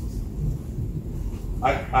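A steady low rumble of room noise, with a man's voice starting near the end.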